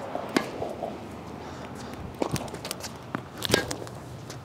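Tennis rally: several sharp knocks of the ball off racket strings and the hard court, the loudest near the end.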